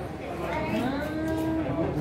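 People's voices, one of them drawn out into a long held vocal sound near the middle.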